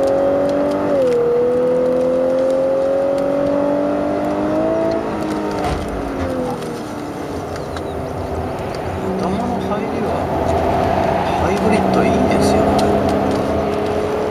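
Lexus LC500h's 3.5-litre V6 hybrid engine running hard through the gears: the revs climb, drop sharply about a second in at an upshift, and climb again. It eases off about five seconds in, runs lower for a while, then builds up again.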